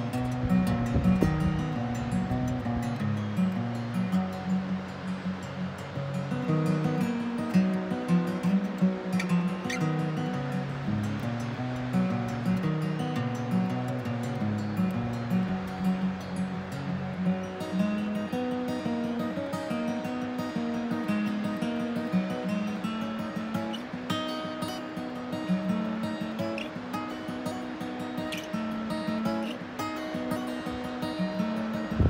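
Steel-string acoustic guitar played fingerstyle, a repeating riff of picked notes and chords.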